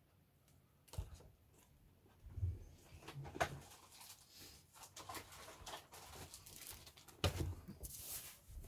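Handling noises on a workbench: a soft knock about a second in, scattered clicks and the rustle of a plastic bag, then a thump near the end as a bagged plastic model kit part is set down on the cutting mat.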